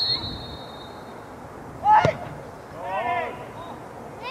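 A referee's whistle blows briefly, fading within the first second, then about two seconds in a football is struck hard from a free kick, a single sharp thud and the loudest sound.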